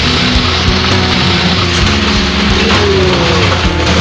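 Heavy rock music with a steady beat, over the continuous rattling roll of a metal shopping cart's wheels running fast across asphalt.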